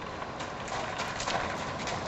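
A Lusitano mare's hooves stepping on gravel: a quick run of steps that starts about half a second in.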